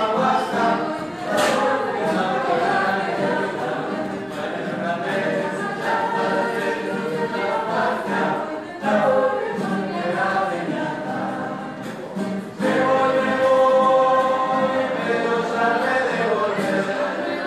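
Mixed choir of men's and women's voices singing a cappella in sustained phrases, with short breaths between phrases about nine and twelve seconds in and a louder passage from about thirteen seconds.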